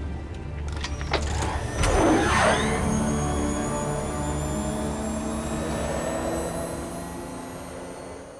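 Film score of sustained tones with the Batpod's engine sweeping past about two seconds in, its pitch dropping and then climbing steeply.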